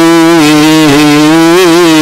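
A man's voice chanting one long sustained note of a melismatic Coptic liturgical melody, the pitch held with small wavering bends.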